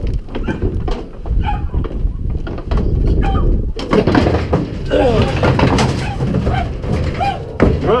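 Hogs moving around inside a metal stock trailer: repeated bangs, thuds and hoof clatter on the trailer floor and walls, with short pitched cries mixed in.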